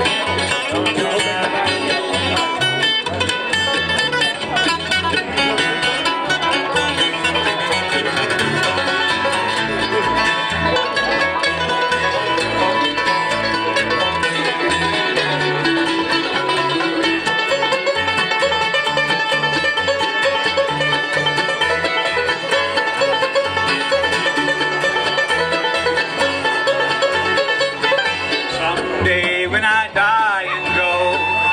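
Live bluegrass band playing an instrumental break: banjo, fiddle, mandolin, acoustic guitar and upright bass together, with no singing.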